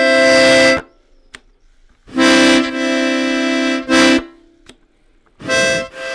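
Piano accordion with its treble grille removed, sounding chords in separate blocks: one cutting off under a second in, a second held about two seconds, and a third starting near the end, with silent pauses between and a single click in the first pause. The reed registers are being switched between chords to show how they select which reed banks sound.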